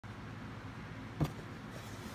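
A steady low hum with a single sharp knock about a second in.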